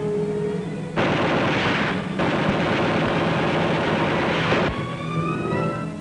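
Orchestral film score, cut through about a second in by a long burst of rapid gunfire. After a brief break a second, longer burst follows and stops shortly before the end, with the music carrying on beneath.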